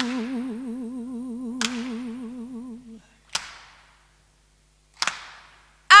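A woman holds a long sung note with a steady vibrato that stops about three seconds in, while sharp drum-kit hits sound four times, each trailing off in the hall's echo. A stretch of near silence follows, and she comes in loudly with a new note at the very end.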